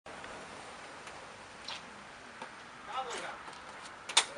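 Faint steady background hiss with a few soft clicks, and a man's voice saying "yeah" about three seconds in.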